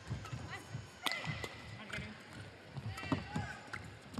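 Badminton rally: rackets strike the shuttlecock with sharp cracks, the loudest about a second in and again near three seconds. Between them come short squeaks of shoes on the court mat and the thud of footsteps.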